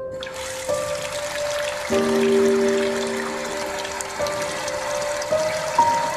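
A bathroom sink tap is turned on, and water runs steadily and splashes into the basin from just after the start.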